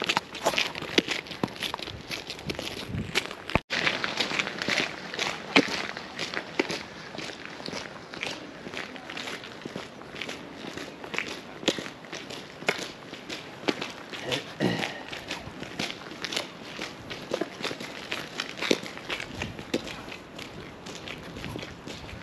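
Footsteps on a paved sidewalk at a steady walking pace, about two steps a second, with a brief dropout a few seconds in.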